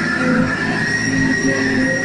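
Live rock band playing: guitars hold long sustained notes over a lower part whose notes change every half second or so.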